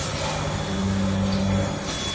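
Pouch packing machinery running: a steady low mechanical hum under an even hiss.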